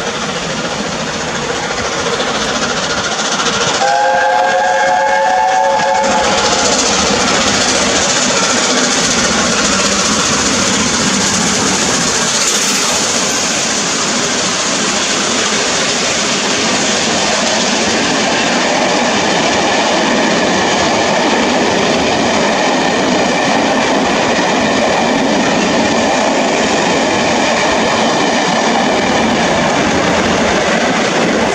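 LNER A4 Pacific steam locomotive 60007 Sir Nigel Gresley sounding its chime whistle once, a steady chord of about two seconds, about four seconds in, as it approaches. The locomotive and its coaches then pass close at speed, a loud steady rush of wheels on the rails that holds to the end.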